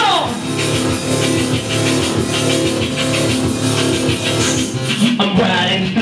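Live band playing a loud punk-electronic song: a steady drum beat under held chords, with no vocal line until a voice comes back in near the end.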